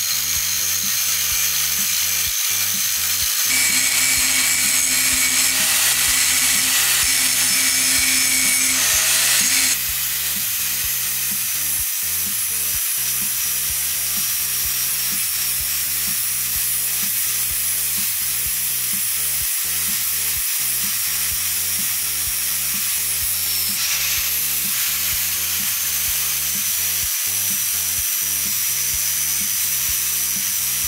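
Angle grinder with an abrasive disc grinding rust off a steel axe head: a steady high whine over a hissing grind. It runs louder with extra tones from a few seconds in to about a third through, and the whine dips briefly in pitch a little past two-thirds through.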